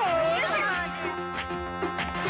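Background film music with steady held notes; in the first second wavering, sliding high-pitched cries ride over it.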